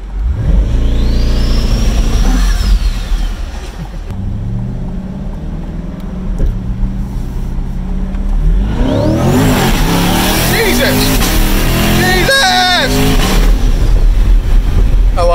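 Twin-turbocharged C8 Corvette's 6.2-litre LT2 V8 at full throttle from a launch, its pitch climbing through the gears with breaks at the upshifts about 4 and 8.5 seconds in. A high turbo whistle rises and falls as each gear pulls.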